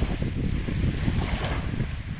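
Small waves washing onto a sandy shore, with wind buffeting the microphone. A wave's wash swells louder about one and a half seconds in.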